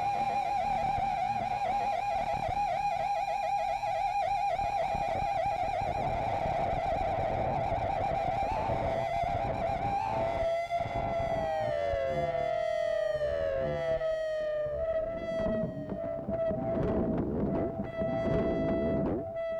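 Instrumental music: a sustained, effects-laden electric guitar lead note with wide, wavering vibrato, which about ten seconds in bends down in several sliding glides and settles on a steady held note.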